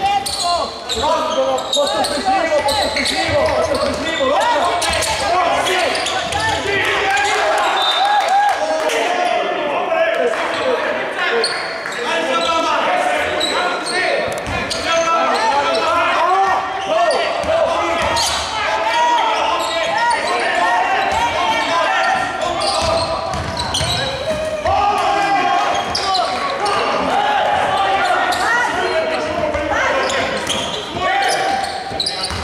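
A basketball being bounced on a wooden gym floor during live play, with the indistinct voices of players and spectators throughout, in a reverberant hall.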